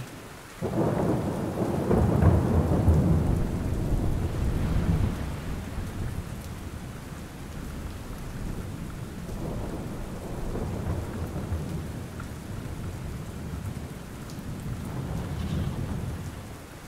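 Steady rain falling, with a roll of thunder that starts about half a second in, is loudest for the next few seconds and then fades. Weaker rumbles swell again later.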